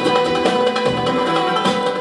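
Live Turkish classical music: an ensemble of plucked strings, among them kanun and guitar, with violin, playing a continuous melodic passage.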